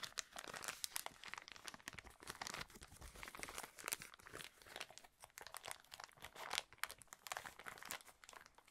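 Clear plastic packaging crinkling as it is handled, dense irregular crackles throughout.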